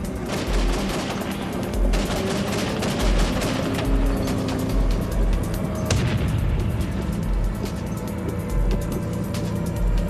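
Tank gunfire over documentary music with a steady low beat: several sharp shots from M1 Abrams tanks, the loudest about six seconds in.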